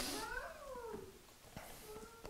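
A faint, high, cry-like sound that wavers and falls in pitch, loudest in the first second and trailing off in weaker calls. It opens with a brief rustle.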